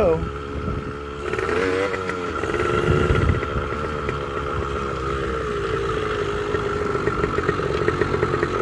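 Motorcycle engine running under way. Its pitch rises and falls with the throttle for the first couple of seconds, then holds fairly steady.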